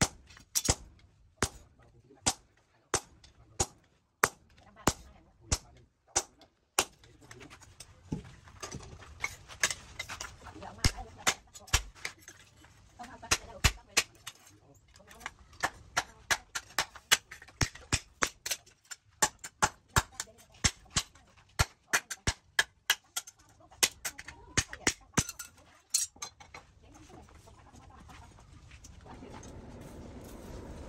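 A hand hammer striking a hot steel knife blank on a steel post anvil, each blow ringing. For the first several seconds the blows fall evenly, about one every two-thirds of a second. They then come faster and less even, and stop a few seconds before the end.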